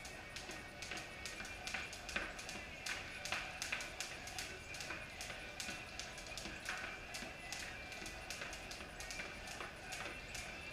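Two jump ropes slapping a concrete floor, a quick, uneven run of sharp ticks as the two ropes fall out of step, with music playing behind.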